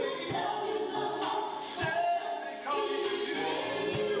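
A vocal group singing in close harmony live on stage, several voices together, with a band behind them marking the beat with a drum struck every second and a half or so.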